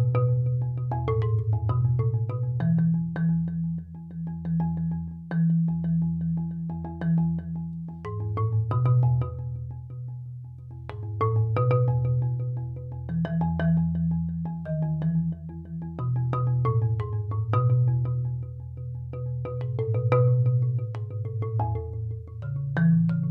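Solo concert marimba played with soft blue yarn mallets, a slow and mellow piece. Long held low notes change every few seconds under a melody of struck notes higher up.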